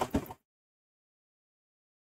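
The last of a spoken word trails off in the first moment, then dead silence with no room sound at all.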